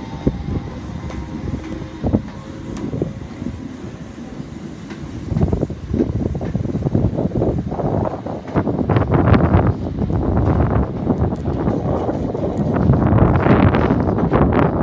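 Class 321 electric multiple unit pulling away, its wheels running on the rails, with wind buffeting the microphone and growing louder from about halfway.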